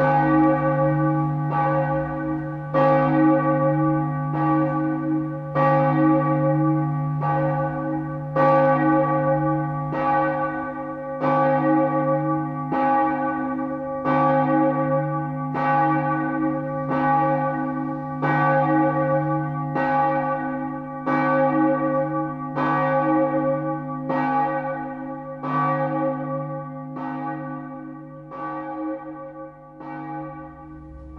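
A church bell tolling in a slow, steady rhythm, about one stroke every second and a half, each stroke ringing on over a constant low hum; the strokes get a little softer near the end.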